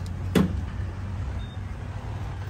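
Vehicle engine idling with a steady low hum. There is one sharp click about a third of a second in.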